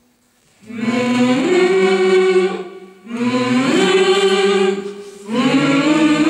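Mixed choir of men's and women's voices singing held chords in three phrases, with short breaks between them; the first phrase comes in after about half a second of near silence.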